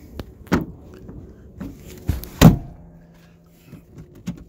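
Knocks and thumps from a pickup's front seat being handled and shifted: a sharp knock about half a second in, and the loudest thump about two and a half seconds in.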